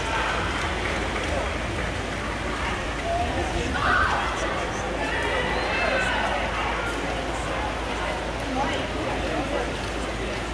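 Indoor pool crowd noise at a swim meet: indistinct voices and shouts from spectators, echoing in the natatorium, over a steady low hum.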